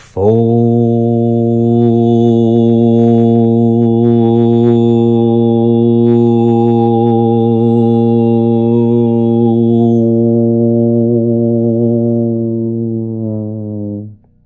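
A man's voice toning one long, low, steady note on the sound 'fo', held in a single breath as a chant. It weakens slightly over the last couple of seconds and then stops.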